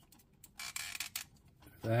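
Hard plastic parts of a transforming robot action figure clicking and scraping as they are moved by hand: a few short clicks and a brief scrape.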